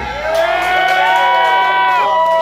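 End of a live heavy metal song: the drums and bass stop and the electric guitars ring on in long sustained tones. The tones glide up over the first second and then hold, much like guitar feedback.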